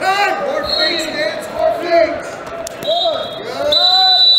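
Wrestling shoes squeaking repeatedly on the vinyl mat as the two wrestlers hand-fight and drive in, in short rising-and-falling squeals, with voices calling out around the mat.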